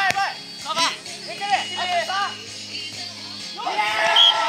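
Players' voices shouting and calling during a beach volleyball rally, with a sharp slap of a hand striking the ball right at the start.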